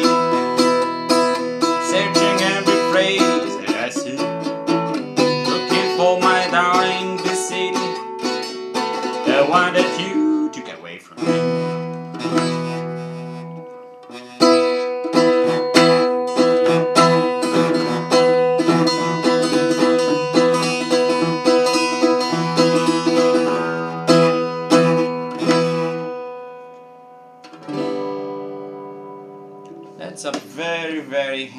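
Small Harley Benton steel-string travel acoustic guitar, strung with 13-gauge strings, being played: plucked single notes and chords, with brief breaks about eleven and fourteen seconds in. Near the end a final chord is left to ring out and fade.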